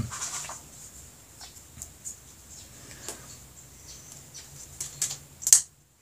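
Small clicks and rustles of a switchblade knife being handled, with two sharper clicks about five seconds in as the blade is snapped open. A faint steady low hum runs underneath.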